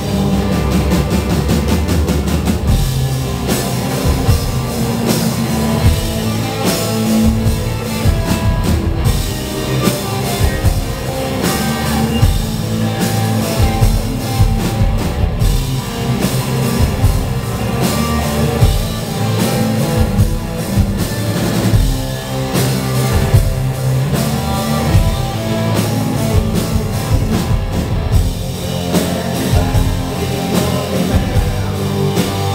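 Live rock band playing loud and steady: a drum kit beating out a regular rhythm under electric guitars and bass.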